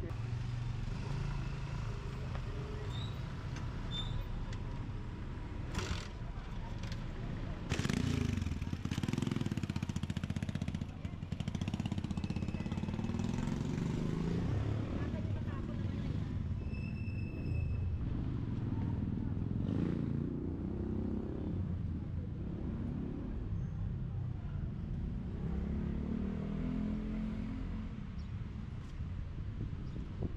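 Street ambience of motorcycles, tricycles and cars with steady engine rumble, and people's voices in the background. It gets louder about eight seconds in as a vehicle passes.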